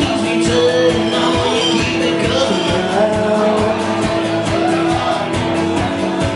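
A man singing while strumming an acoustic guitar, a steady strumming rhythm under the sung melody.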